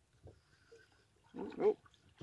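Mostly quiet with a few faint small knocks, then, about one and a half seconds in, a man's drawn-out exclamation "oh" with a wavering pitch.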